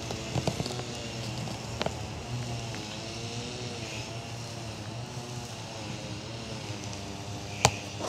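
A steady low engine hum whose pitch wavers slowly, with one sharp click near the end.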